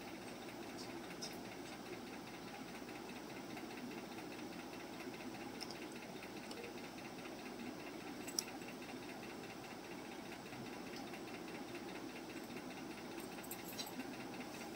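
Quiet, steady machine hum with hiss, unbroken throughout, with one faint click about eight seconds in.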